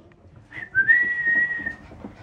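A person whistling a call to the dog: a short high chirp, then a longer note that slides up and holds steady.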